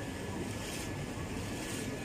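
Steady rushing noise of wind on the phone's microphone, swelling and easing about once a second.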